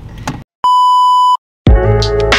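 An edited-in electronic beep: one steady pure tone lasting about three-quarters of a second, set between two short gaps of dead silence, after a moment of quiet car-cabin noise with a click. Electronic music with a beat starts near the end.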